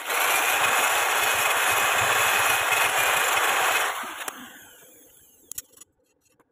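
Power tool spinning a wire end brush against a stick weld bead on steel square tube, a steady loud scrubbing that cleans slag and spatter off the weld. About four seconds in the brush leaves the work and the sound dies away over about a second.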